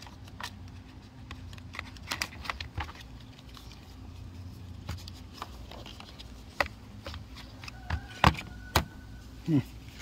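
A small cardboard box being handled and poked into, with scattered light clicks and rustles; two sharper clicks come about eight seconds in.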